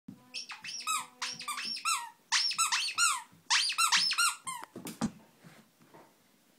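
Squeaker in a plush dog toy squeaked over and over as a dog chews it, several short falling-pitch squeaks a second in quick runs, stopping about three quarters of the way through. A soft thump follows.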